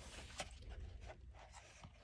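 Faint rustling and rubbing of hands on a thick, rough coloring-book page, with a small tap about half a second in and another near the end.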